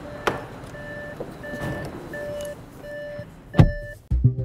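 An Audi car's interior warning chime sounds, a short steady tone repeating about every three-quarters of a second, as the driver climbs in. A light click comes early, and a heavy thump of the car door shutting near the end is the loudest sound.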